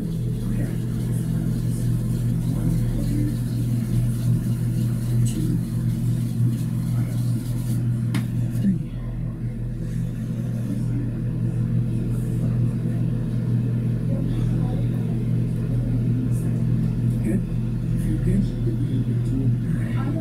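A loud, steady low hum, with quiet indistinct voices under it.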